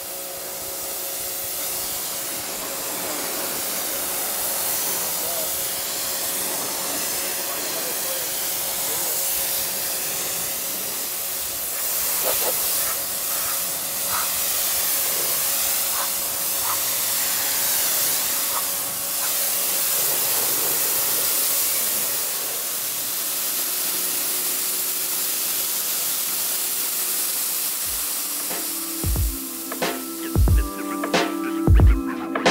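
Pressure washer spraying a steady hiss of water over a car's foam-covered paint, rinsing off the pre-wash foam. A faint steady hum runs beneath the spray.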